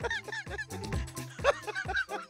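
A man laughing heartily in a string of short, bouncing bursts, over a background music bed.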